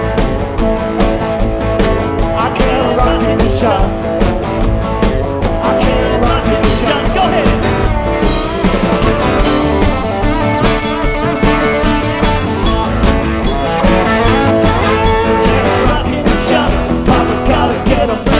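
Rock band playing live: electric guitars over bass guitar and a drum kit, in an instrumental stretch of the song.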